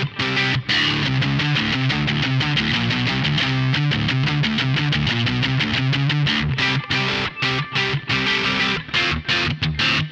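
Electric guitar played through a Vox amPlug3 High Gain headphone amplifier on its channel 2 drive setting: a distorted riff of low, chugging notes. In the second half it breaks into short stabs with brief stops between them.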